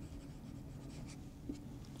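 Dry-erase marker writing on a whiteboard: faint strokes and small taps of the felt tip on the board.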